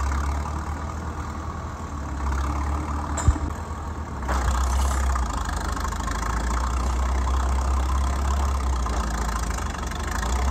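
Old crawler bulldozer's diesel engine running as the machine drives, a steady low drone that gets louder about four seconds in. One sharp knock sounds a little after three seconds.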